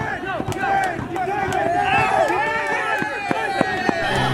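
Several men shouting and yelling over one another during a play, excited calls overlapping with no clear words, with a few sharp clicks, two of them near the end.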